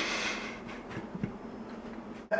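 Someone chewing a mouthful of s'more with faint, sticky mouth sounds over a steady background hum.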